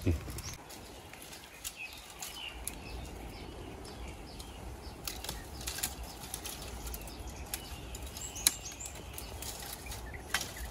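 Dry, fire-scorched bamboo twigs and fallen leaves crackling and rustling as they are handled and stepped on, with scattered small snaps. The sharpest snap comes about eight and a half seconds in.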